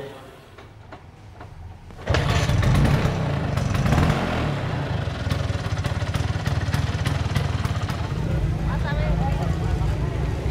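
Quiet for about two seconds, then a motor scooter's engine running loudly sets in abruptly and carries on steadily to the end.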